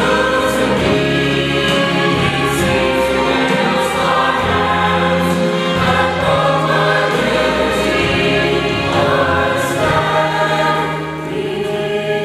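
Mixed church choir of men and women singing a gospel anthem together.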